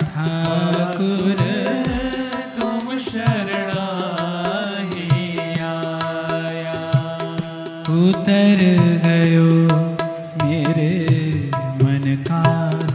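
A man singing a devotional bhajan in a gliding, melismatic line over steady held accompaniment notes, with frequent light percussion strokes. The singing swells loudest near the two-thirds mark.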